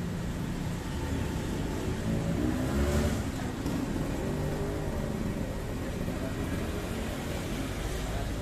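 Steady road traffic from the street, swelling briefly about three seconds in as a motorbike passes close by.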